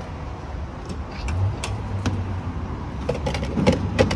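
Handling clicks and knocks at a gas pump over a steady low vehicle rumble. A low hum joins about a second in, and the sharpest knock comes near the end.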